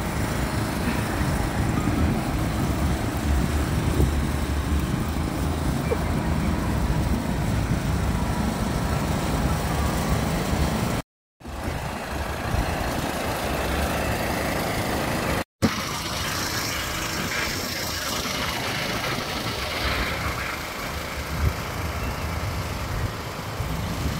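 Portable petrol generator running steadily with a low rumble, powering the blowers that keep large inflatable figures up. The sound breaks off twice for a moment, about 11 and 15 seconds in.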